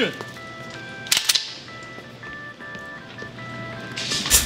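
Background music: a simple melody of clear, pure electronic notes stepping from pitch to pitch, like a jingle. A brief crackling noise cuts in about a second in.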